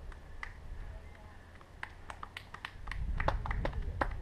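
A quick, irregular series of sharp clicks and taps that come thicker in the second half, over a low rumble near the end.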